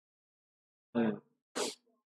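A man sneezing once: a short voiced 'ah' about a second in, then a sharp, hissing burst half a second later.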